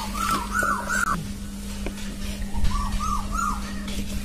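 A bird calling in two short runs of clear whistled notes, each note rising and falling. The first run has four notes climbing in pitch; the second has three, a little lower. A steady low hum runs underneath.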